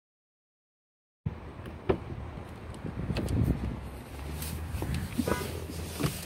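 Dead silence for about a second, then a low rumble with scattered clicks, knocks and rustling from a person moving into a car's driver seat while holding the phone.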